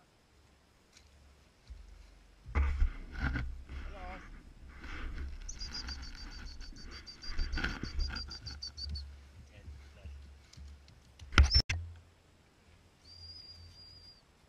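Wind buffeting the microphone, with rustling and a couple of sharp knocks, the loudest about a second and a half before the end; a high, wavering whistle is held for about three seconds in the middle, and a short one sounds near the end.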